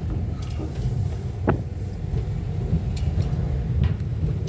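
Low, steady rumble of a car's engine and tyres heard from inside the cabin as it drives slowly, with a few brief ticks or creaks.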